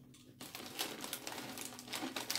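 A plastic chip bag crinkling and the crisp snacks inside rustling as hands dig into it, a run of quick, irregular crackles.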